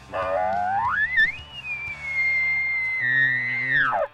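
Bull elk bugle: it starts low and climbs steeply into a long, high whistle, holds it for about two seconds, then drops off sharply near the end.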